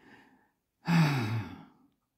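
A man sighs once, about a second in: a breathy out-breath with voice, falling in pitch.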